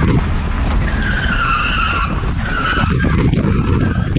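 BMW E34 520's straight-six engine running hard while its tyres squeal in bursts as the car slides through a drift, heard from inside the cabin.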